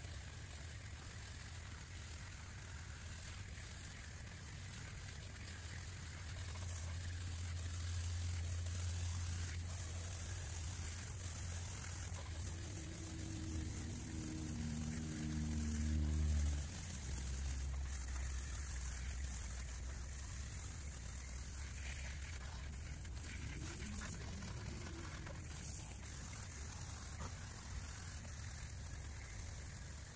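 Water spraying from a garden hose nozzle onto an air-conditioner condenser unit, a steady hiss of spray spattering on the casing and coil fins. A low rumble swells underneath around the middle.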